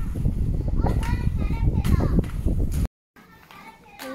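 Children's voices over a low rumbling noise, which cuts off abruptly about three seconds in, leaving a much quieter stretch.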